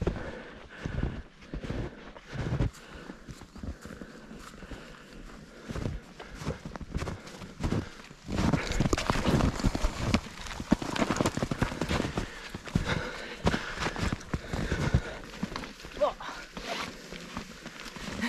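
Footsteps crunching through snow in an irregular rhythm, becoming louder and busier about halfway through as the walkers push past snow-laden branches.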